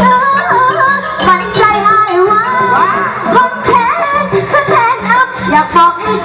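A solo voice singing, sliding and bending between held notes, over backing music with a steady beat and a low bass line.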